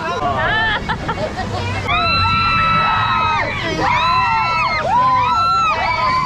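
Riders on a river-rapids raft screaming and whooping over a babble of voices: two long, high screams, the first about two seconds in and the second just before the five-second mark.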